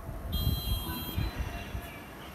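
A steady, high-pitched beep-like tone starting shortly in and lasting about a second, over a low rumble.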